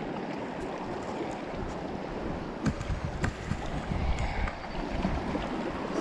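Fast river current rushing and swirling past granite boulders at the bank, a steady wash of water noise. A couple of brief sharp clicks come a little under halfway through.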